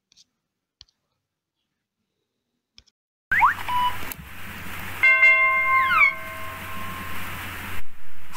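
A few faint clicks, then from about three seconds in the sound effects of a subscribe-button animation: quick rising chirps, then several electronic tones ringing together with falling glides, over a steady hiss and low hum.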